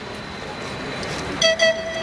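Traffic noise from a passing tram, a steady haze that swells slowly, then about one and a half seconds in a panpipe starts playing: two short notes and then a held note.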